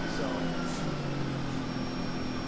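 Becker oil-lubricated rotary vane vacuum pump running on its variable-frequency drive: a steady motor hum with a faint thin whine above it.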